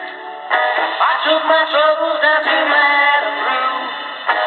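A pop song with a lead vocal, received from AM station CFZM 740 and played through the small speaker of a Tecsun 2P3 kit radio. The sound is thin and narrow, with no deep bass or high treble. The song starts about half a second in.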